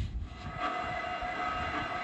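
A steam locomotive whistle sound effect, one long steady note that starts about half a second in, over a low rumble.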